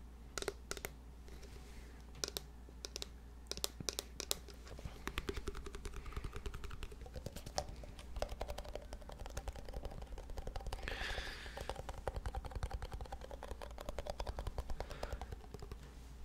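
Fingertips tapping and clicking on a small round container held close to the microphone: a few sharp separate taps at first, then quick continuous tapping, with a short stretch of scratchy rubbing about two-thirds of the way in.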